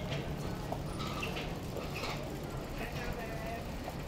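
Street ambience: footsteps and small clicks on the pavement, and faint chatter of passers-by over a low steady hum.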